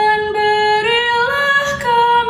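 A young woman singing a Catholic responsorial psalm refrain solo and unaccompanied, in Indonesian, in a Dayak-style melody. She holds notes that step up in pitch about a second in and come back down near the end.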